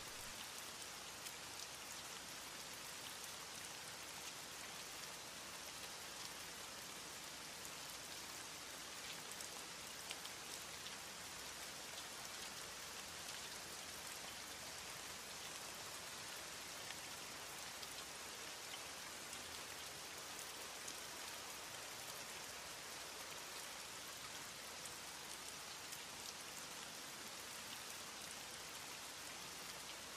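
Steady rain: an even hiss of falling rain with small drop ticks here and there, fairly quiet.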